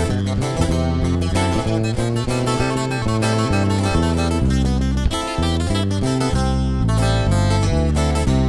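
Instrumental break in a regional Mexican corrido: acoustic guitars picking a quick run of notes over a bass line, with no singing.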